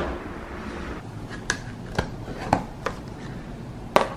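Quiet room tone broken by a few light, sharp clicks spaced about half a second apart.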